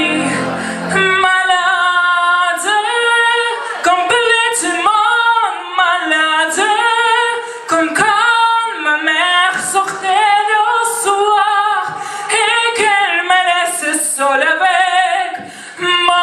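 A woman singing solo into a microphone, her sustained notes wavering with vibrato. About a second in, the backing track's low bass drops out, leaving her voice almost alone.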